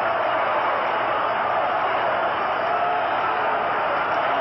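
Large stadium crowd cheering steadily after the go-ahead run scores.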